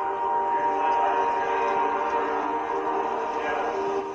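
A sustained chord of several steady tones, held unchanged for about four seconds, from a video soundtrack played through a screen's speaker.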